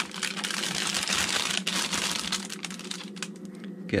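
Clear plastic film wrapping crinkling and crackling as it is handled and peeled off a collapsible silicone bowl, a dense run of crackles that thins out near the end.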